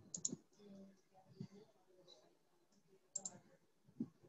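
Near silence: quiet room tone with a few faint, sharp clicks, a pair just after the start and another pair about three seconds in.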